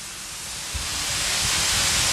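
A hiss of rushing air that grows steadily louder, with a low rumble joining in about a second in.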